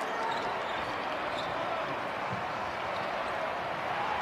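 A basketball being dribbled on a hardwood court, over the steady background noise of the arena.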